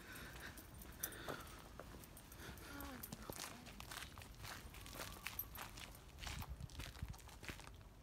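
Footsteps, a run of soft irregular steps, with faint voices talking now and then in the background.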